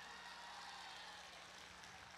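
Near silence: faint room tone with a steady low hum during a pause in amplified speech.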